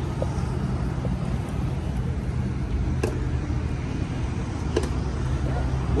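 A steady low engine hum over road-traffic noise, with a few faint clicks.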